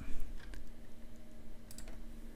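A few scattered keystrokes on a computer keyboard, clustered soon after the start and again near the end, over a faint steady hum.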